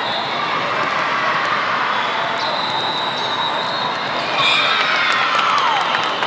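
Din of a large hall full of volleyball matches: constant crowd chatter and shouts, with volleyballs being struck and bouncing on the courts.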